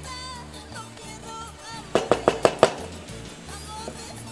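Background music, with a quick run of about six sharp knocks about two seconds in: a bowl tapped against the rim of an aluminium pot to empty out chopped onion.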